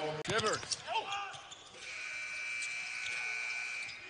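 Basketball game broadcast audio of court and arena sound, with brief voices in the first second. A steady high-pitched tone comes in a little before halfway and holds to the end.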